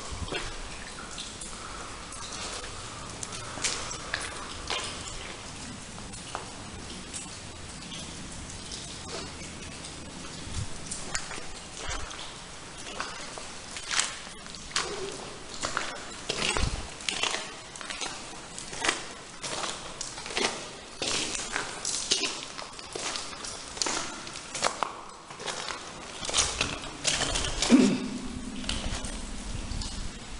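Footsteps on a wet, muddy floor, irregular steps that grow more frequent about halfway through, with a louder knock about two seconds before the end.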